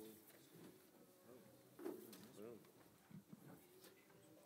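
Near silence: room tone with faint talking from people off-microphone, a little clearer about two seconds in.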